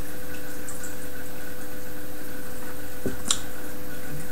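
A person sipping beer from a glass, with quiet wet mouth and swallowing sounds, then a short sharp click a little after three seconds in. A steady low hum of room noise runs under it.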